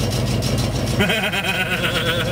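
Pickup truck engine idling steadily, with a man laughing for about a second starting halfway through.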